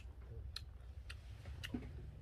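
Faint eating sounds at a table: a few soft, sharp clicks about every half second, over a low steady rumble.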